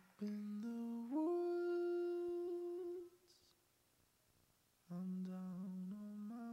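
A voice humming long held notes that climb in steps, holding the top note for about two seconds before stopping; after about two seconds of quiet the same climbing hum starts again.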